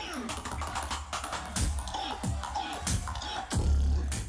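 Live battle beatboxing played back from a recording: quick percussive clicks and snares, with deep bass hits about a second and a half in and again near the end.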